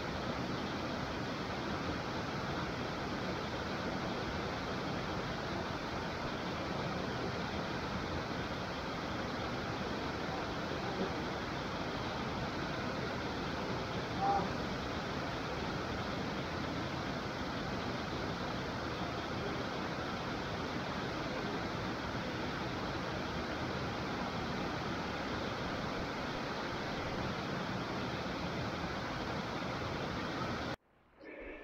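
Steady rush of water pouring over a small river dam, an even hiss that holds at one level throughout, with one brief sharp sound about halfway through.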